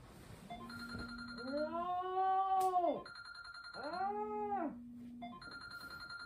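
A phone alarm ringing in repeated bursts of one steady tone, broken twice by a person's long whining groan that rises and falls in pitch.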